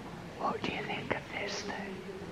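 A person whispering a few soft words, starting about half a second in.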